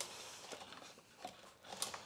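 Faint handling noise of a canister vacuum's power cord and plastic housing being worked by hand, with a few light clicks.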